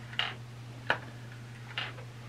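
Soft rustles of straightened hair being handled by fingers, with one sharp click about a second in, over a steady low hum.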